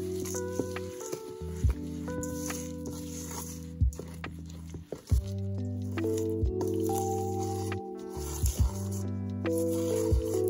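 Soft background music of sustained chords over a spoon stirring thick, sticky oat batter in a stainless steel bowl, with wet squelching and a few sharp, irregular knocks.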